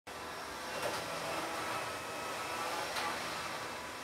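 Steady indoor background noise, a hum with a faint hiss, with two faint knocks, one about a second in and one about three seconds in.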